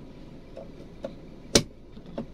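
Handbrake lever of a Toyota Agya being lowered: a faint click about a second in, then one sharp clack as the lever drops to its rest.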